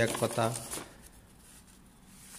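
A man's voice for under a second, then faint rustling of the paper pages of a land deed being handled.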